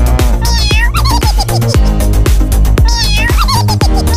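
Electronic dance track with a heavy bass beat and a looped cat-meow sample that sounds twice.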